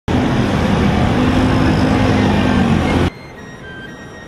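Loud city street traffic: a vehicle engine running under heavy road noise, cutting off abruptly about three seconds in.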